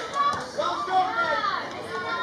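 Several voices at a youth soccer match shouting and calling out, in drawn-out calls that rise and fall in pitch.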